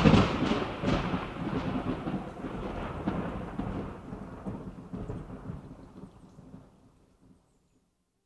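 Thunder sound effect: a clap just as it begins, then a long rumble that slowly fades and dies out about seven seconds in.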